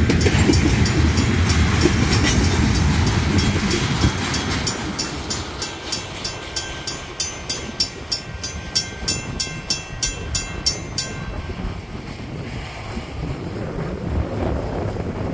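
Crossing bells, a WCH mechanical bell and a WCH electronic bell, ring in a steady rapid beat over the rumble and clatter of the last freight car rolling past. The train sound fades over the first few seconds. The bells stop about 11 seconds in as the crossing signals shut off.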